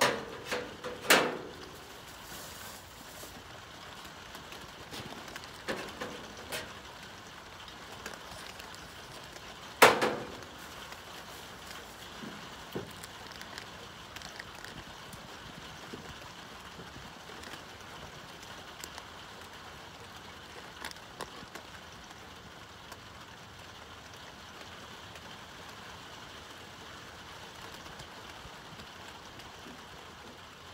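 Steady light rain falling, with a few sharp knocks and thumps over it: two near the start and the loudest about ten seconds in.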